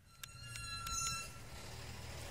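A faint low rumble with a few light clicks, each followed by thin, high ringing tones, in the first second or so.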